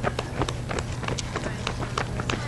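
A runner's shoes striking asphalt in quick, sharp footfalls as he runs past close by, with faint spectator voices behind.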